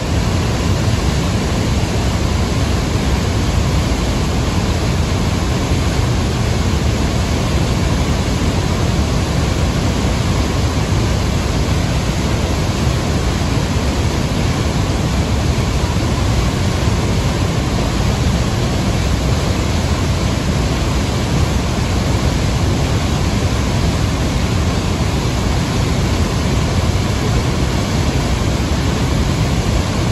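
Devi's Fall waterfall pouring into a narrow rock gorge: a loud, steady rush of falling water, heaviest in the low end.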